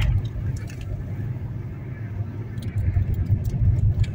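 Steady low rumble of a car's engine and tyres on the road, heard from inside the moving car, with a few faint ticks near the end.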